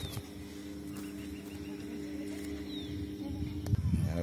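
Steady low hum of chairlift machinery with a low rumble of wind on the microphone, the rumble growing near the end; two faint short bird chirps high above it.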